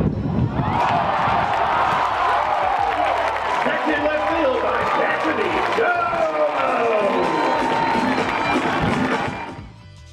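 A stadium crowd cheering and yelling, many voices rising and falling together, fading out near the end.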